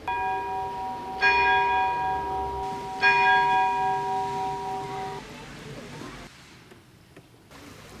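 Church bell struck three times, the strokes about a second and then two seconds apart, each one ringing on and fading over a few seconds.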